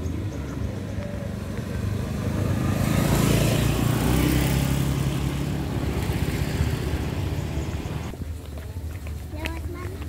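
Motor scooter passing close along a paved lane: its engine and tyres build up over a couple of seconds, are loudest about three to four seconds in, and fade away by about eight seconds, over a steady low background rumble.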